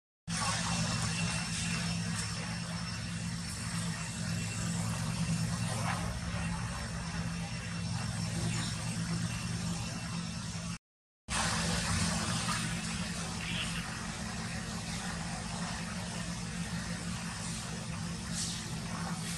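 A steady low engine hum with outdoor background noise, broken by a sudden drop to silence for about half a second near the middle.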